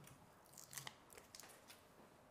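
Near silence with a few faint ticks and crackles of handling: fingers pressing double-sided sticky tape onto the inside of a wooden embroidery hoop.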